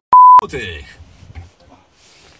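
A short, loud test-card tone: one pure, steady high beep lasting about a third of a second at the very start, cutting off sharply.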